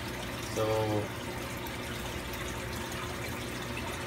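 Steady water noise of a running aquarium: air bubbles rising from a bubble curtain and water churning, with no break or change.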